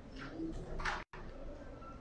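A bird calling faintly, with a short low note about half a second in, over low background noise.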